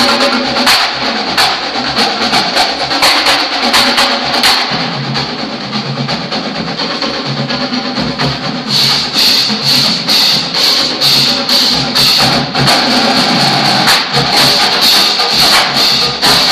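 Marching band playing, with the drumline's strokes prominent; the sound grows fuller and brighter about nine seconds in.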